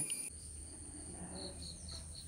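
Faint insect chirping, likely crickets: a short high chirp repeated about five times a second, starting about a second in, over a steady high-pitched whine.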